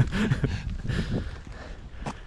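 A man laughing for about a second, then fading out, with wind rumbling on the microphone throughout.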